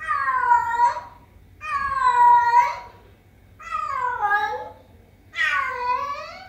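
Domestic cat meowing four times, each meow drawn out to about a second, with short pauses between.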